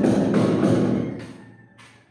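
Handling noise on a phone's microphone: rubbing and small knocks as the phone is moved about, fading away just over a second in.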